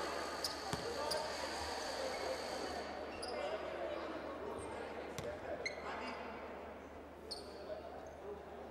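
Basketball arena sound: a murmur of crowd voices slowly dying down, with scattered short sneaker squeaks and a few basketball bounces on the hardwood court.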